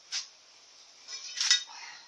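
A curved flat steel strip clinking and clanking against a welded steel bench frame as it is handled: a light click just after the start, then a rattling scrape about a second in that ends in a sharp clank with a brief metallic ring.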